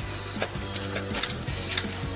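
Film score with sustained low notes, with a few light clicks from objects being handled, about half a second, one second and nearly two seconds in.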